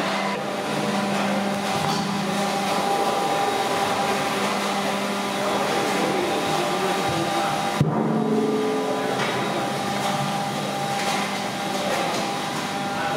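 Steady whirring machine noise with several held tones. About eight seconds in comes one sharp knock of a knife striking a wooden cutting board.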